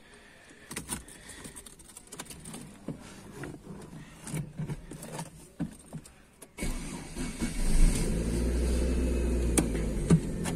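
Small clicks and rustles of keys and handling inside a Chevrolet car's cabin, then about six and a half seconds in the engine starts and settles into a steady idle.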